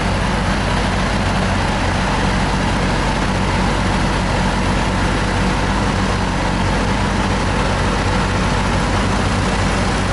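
A heavy diesel engine idling steadily with an even low throb, from the machinery running around the dismounted skidder grapple.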